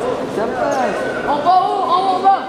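Boxing spectators shouting at the fighters, several voices overlapping with drawn-out calls that grow louder in the second half, in a reverberant sports hall.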